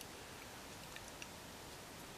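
Quiet room tone: a faint steady hiss with a couple of faint ticks about a second in.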